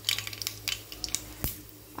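Mustard seeds and urad dal sizzling in hot oil in a kadai, with irregular sharp crackles as the seeds begin to splutter: the tempering (tadka) stage. A faint steady low hum runs underneath.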